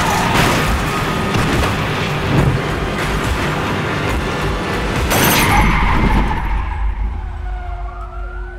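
Action-trailer sound mix of music and car-crash effects, with a heavy impact about five seconds in as a car tumbles. The mix then dies away while a police siren wails, rising and falling, near the end.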